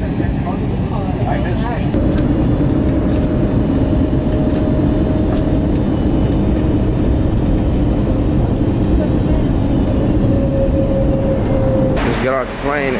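Jet airliner engines and cabin noise heard from a window seat: a loud, steady rumble with a held hum as the plane moves over the airfield.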